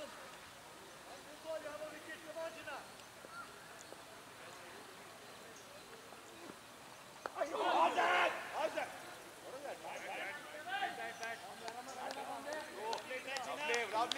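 Cricket fielders' shouts and calls across an open ground. About seven seconds in, as the ball is bowled, several voices shout together loudly, followed by scattered calling and chatter.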